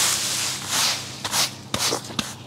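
Dry leaf litter and twigs being scraped along a garden path with a long-handled tool, in a series of quick hissing strokes: a longer one at the start, then three short ones.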